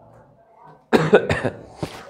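A man coughing: a short, sharp run of coughs starting about a second in, with one more brief cough just before the end.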